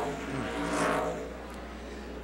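NASCAR Cup stock car V8 engines running through a turn at a flat-track practice, swelling as a car passes and then easing off about a second in.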